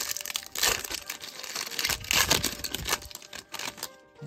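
Foil wrapper of a trading card pack crinkling and tearing as it is opened by hand, in irregular crackly bursts, loudest just under a second in and again about two seconds in.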